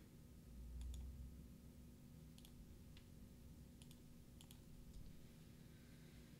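Near silence with a handful of faint, sharp clicks from someone working a computer, some coming in quick pairs, and a brief low rumble in the first second or so.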